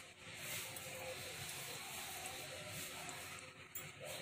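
Faint steady background noise: room tone with no distinct sound events.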